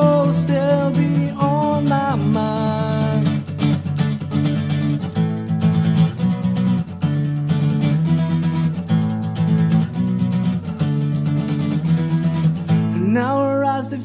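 Acoustic guitar strummed in a steady rhythm through an instrumental passage of a song, with a man's singing voice at the start and coming back in near the end.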